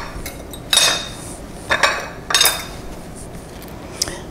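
Metal cutlery clinking against ceramic plates: three short clinks, each with a brief ring, about a second apart.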